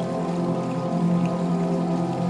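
Slow, calm new-age music of layered held notes; a low sustained note swells in shortly after the start. Faint rain patter lies underneath.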